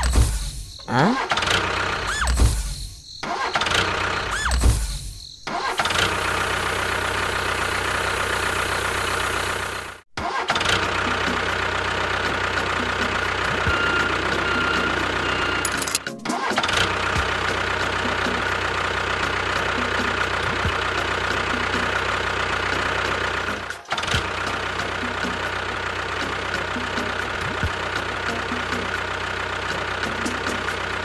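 A tractor engine starts in three short, loud bursts over the first few seconds, then runs steadily. The running sound drops out briefly three times.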